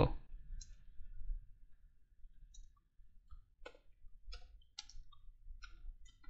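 Faint, irregular clicks of computer keyboard keys as a line of code is typed, sparse at first and coming more often in the second half.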